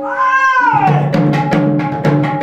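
A short, high cry that rises and falls in pitch while the drumming pauses. About three-quarters of a second in, a Sambalpuri dhol takes up its beat again, two-headed barrel drum strokes with a low ringing tone in a steady rhythm.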